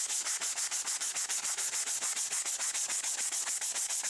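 Medium-grit sandpaper rubbed by hand back and forth along thin-wall PVC pipe, a quick, even rasping of about six strokes a second.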